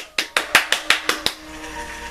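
One person clapping hands quickly, about eight claps in just over a second, followed by quiet music.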